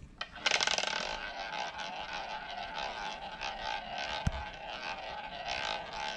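Roulette ball circling the ball track of a wooden roulette wheel: a steady rolling whir with fine rapid ticking that starts about half a second in. A single sharp click about four seconds in.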